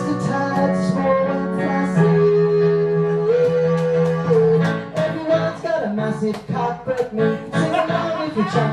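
Live song: electronic keyboard chords with a male voice singing long held notes.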